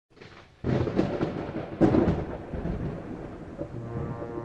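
Thunder sound effect: a sudden crack about half a second in, then a second, louder crack about a second later. Each crack trails off into a rolling rumble that slowly fades.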